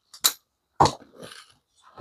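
Folding knives being handled on a table mat: a sharp click about a quarter second in, a duller knock a little later, then faint scuffing as a knife is lifted away.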